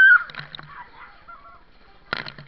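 A child's short, high-pitched squeal, loudest right at the start, followed by splashing water in a swimming pool.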